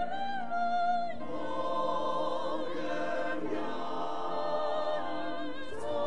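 A choir singing a hymn, several voices holding long notes with vibrato; the chord changes about a second in.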